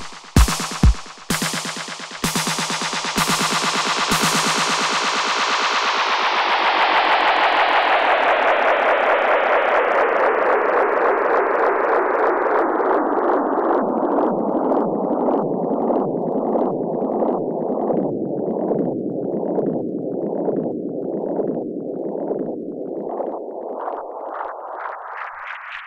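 Live electronic music from Roland AIRA drum machine and synth hardware. A couple of kick-drum hits about two a second stop within the first second, and three more follow a second apart. Then a long sustained synth sound sweeps down in pitch over several seconds, pulses about once a second, and sweeps back up near the end.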